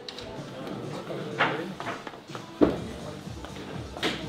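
Background music with indistinct voices under it, broken by two sharp knocks, one about a second and a half in and a louder, duller thump a little over a second later.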